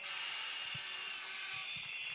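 Steady background hiss with a faint high-pitched tone held under it, and no speech.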